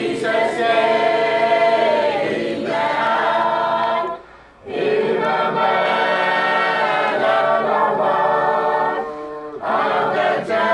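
A congregation singing a hymn unaccompanied, many voices together in long held phrases, with short breaks for breath about four seconds in and again near the end.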